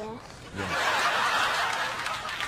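Group laughter, like an audience laughing, rising about half a second in and carrying on, after a brief spoken word at the very start.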